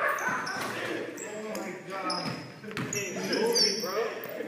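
Basketball bouncing on a hardwood gym floor during play, with players' voices and short high squeaks near the end.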